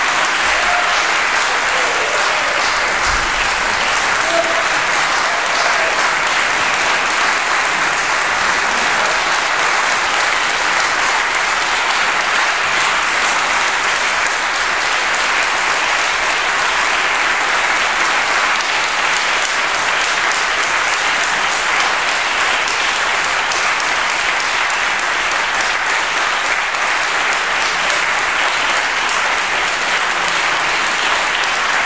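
Audience applauding steadily, a long, even stretch of clapping from a full room.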